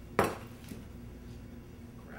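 A single sharp clink of a ceramic plate and cutlery being handled on a wooden counter, with a brief ring after it, then a faint small knock about half a second later.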